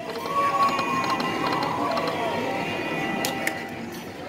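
Aristocrat Dragon's Riches slot machine spinning its reels: the machine's steady electronic spin sound over casino background noise, with a couple of sharp clicks near the end as the reels stop.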